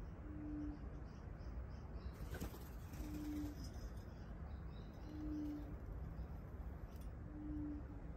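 A dove cooing: four single low coos, each about half a second long, about every two seconds, with faint small-bird chirps behind and a soft knock about two seconds in.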